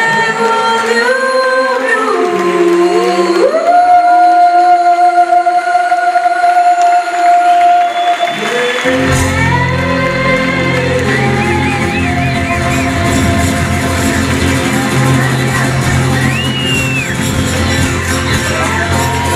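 A woman singing a blues vocal alone, sliding up into one long held note. About nine seconds in, the band comes in with bass underneath and she keeps singing over it in a large hall.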